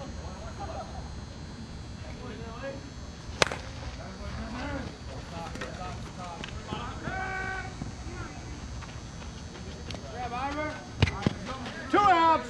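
A softball bat hits the ball once, a single sharp crack about three and a half seconds in, followed by players' voices calling out across the field. Two more short knocks come near the end.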